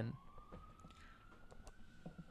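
Faint siren: a single thin tone rising slowly in pitch and levelling off, over quiet room tone.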